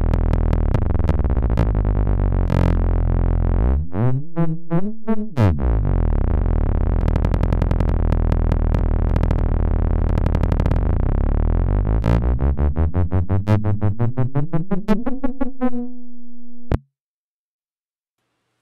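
Synthesized kick drum from Serum run through Glitch2's Stretcher effect: granular stretching smears it into a dense, low, sustained synth sound whose pitch warps as the speed and grain-size knobs are turned. Toward the end it breaks into rapid retriggers that speed up and rise in pitch, holds a single tone, then cuts off suddenly. The retriggering comes from the Serum patch's settings.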